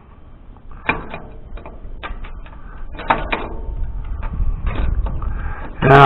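Scattered metal clicks and knocks of an adjustable wrench working the filler plug on a tractor's steering box, over a low rumble that grows louder toward the end.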